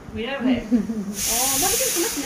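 Voices talking close by, with a steady high hiss starting just past a second in and lasting about a second and a half.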